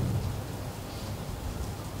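Room tone of a hall during a pause in a talk: a steady, even hiss with a low hum underneath, no distinct events.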